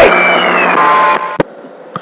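CB radio static hiss with faint whistles right after a transmission ends. It drops to a much quieter hiss about a second in, followed by two sharp clicks.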